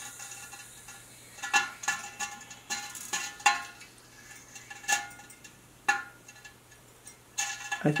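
Stainless steel wire burning in pure oxygen inside a sealed metal chamber: irregular sharp pings, about one or two a second, each ringing briefly at the same few metallic tones as sparks and molten drops strike the chamber. A faint steady hum runs underneath.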